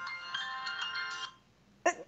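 A phone ringtone plays a quick melody of bright electronic notes and cuts off about a second and a half in. A brief vocal sound follows near the end.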